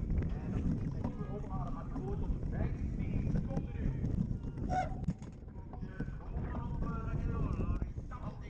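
Wind buffeting a bike-mounted camera's microphone and the cyclocross bike rattling over the course at race speed, with voices in the background throughout.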